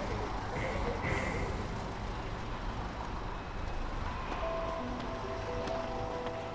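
An idling bus engine's low, steady rumble under faint voices, with held music notes coming in about four seconds in.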